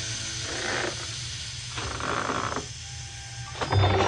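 Steam locomotive sound effects for an animated train: hissing steam chuffs about once a second over a low steady hum, with a quick run of clicks near the end.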